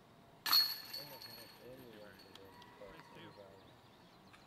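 A disc golf putt hitting the basket's hanging metal chains: a sudden metallic clash about half a second in, then a jingling ring that dies away over a second or so. The putt is made and the disc drops into the basket.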